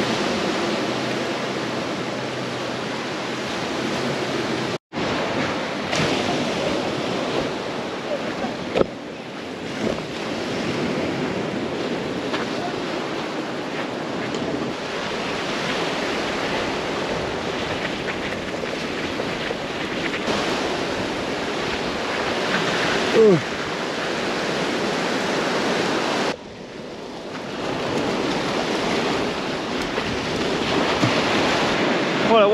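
Small waves breaking and washing up a sandy shore, a steady rushing surf mixed with wind on the microphone. The sound cuts out briefly about five seconds in.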